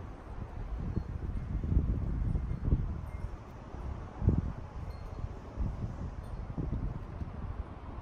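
Wind and handling noise on a handheld smartphone's microphone: an uneven low rumble with irregular soft thumps, and now and then a faint brief high tone.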